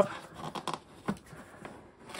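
Hands handling a cardboard product box: soft rubbing and scraping of cardboard with a few light taps.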